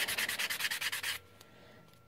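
A worn metal reliefing block rubbed in quick, short back-and-forth strokes, about a dozen a second, over an embossed natural brass blank, lightly sanding the raised pattern. The strokes stop a little after a second in.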